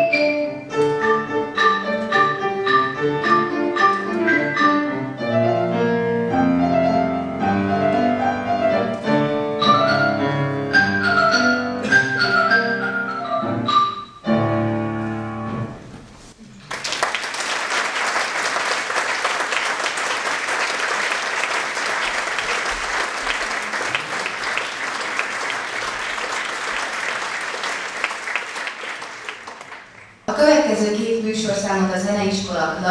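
Marimba played with mallets in a folk-song arrangement, with piano accompaniment, closing on a final chord about 14 seconds in. About three seconds later applause starts and runs on, fading near the end.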